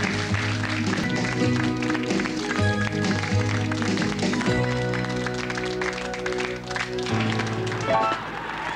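Television quiz show's closing theme music playing over the end credits: held chords that change every second or so, with light percussion.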